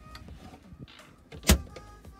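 A camper's cupboard door swung shut, closing with a single sharp knock about one and a half seconds in.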